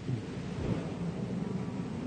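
A congregation settling into its seats: low shuffling and rustling rumble under the steady hiss of an old tape recording, with one dull thump about a third of the way in.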